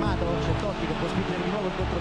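A man speaking in the manner of Italian football commentary, over background music with steady held notes.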